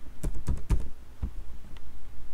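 Computer keyboard being typed on: a quick run of about five keystrokes in the first second, then a couple of single strokes spaced apart.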